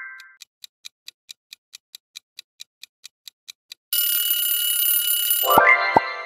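Quiz-timer sound effect: a clock ticking about four times a second, then an alarm-clock bell ringing for under two seconds as the answer time runs out. Near the end come a low thump and a rising electronic chime.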